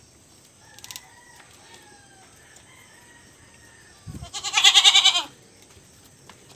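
A single loud farm-animal call about four seconds in, lasting about a second with a wavering, pulsing pitch, just after a low thud. Fainter high calls sound before it.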